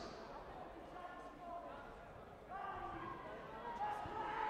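Faint voices in a large sports hall: indistinct talking that picks up about a second in and again past the middle, with no clear words.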